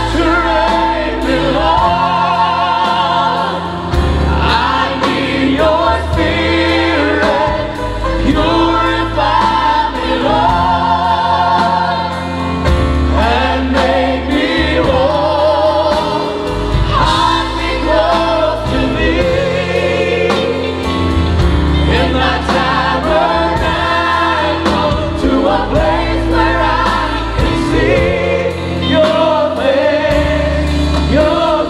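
A worship team of several singers singing together in a gospel style, held notes with vibrato, over a live band of drums, electric guitars and keyboards.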